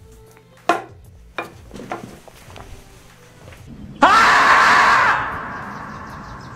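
The screaming-marmot meme: a sudden, very loud, drawn-out human-sounding scream about four seconds in, held for about a second and then fading away. A few sharp clicks come before it.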